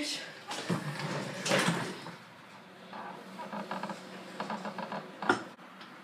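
Indistinct talking in a small room, with a single sharp knock about five seconds in.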